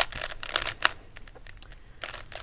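3x3 Rubik's cube being turned fast, a quick run of plastic clicks and clacks as its layers snap round while an algorithm is performed. The sharpest clicks come in the first second, then the turning goes quieter.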